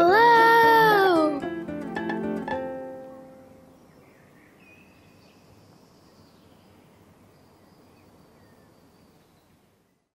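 A child calling one long "Hello!" in the first second, over gentle plucked-string background music that fades out within about three seconds. After that only faint hiss remains, with a few faint high chirps.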